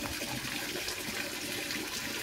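Water running steadily from a wall-mounted plastic tap in a cattle shed, spraying onto and down a concrete wall; a cow has turned the tap on with its muzzle.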